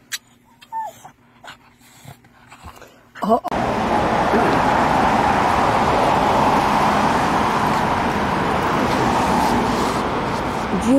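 A dog whimpering faintly a few times in short pitch glides. About three and a half seconds in, a loud, steady rushing noise starts and runs on.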